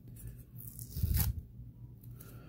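A paper price sticker being peeled off a cardboard card by hand, with a short peeling rasp about a second in.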